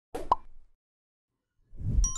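A short cartoon-style plop sound effect, then near the end a low whoosh swelling up.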